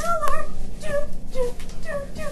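A series of short, high whimpering cries, about two a second, each bending in pitch.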